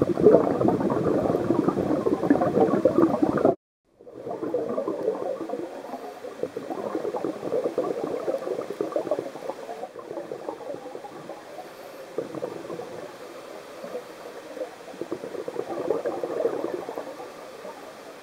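Scuba diver's exhaled bubbles heard underwater, a bubbling and crackling that swells and fades in surges a few seconds long, in time with the breathing. The sound cuts out for a moment about three and a half seconds in, then goes on.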